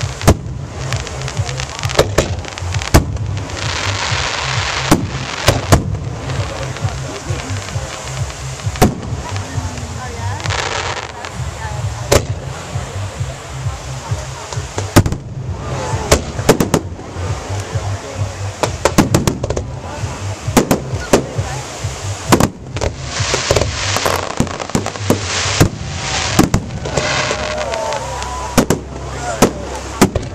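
Aerial fireworks display: shells bursting overhead one after another, with many sharp bangs, at times several in a second, over a continuous hissing, crackling wash.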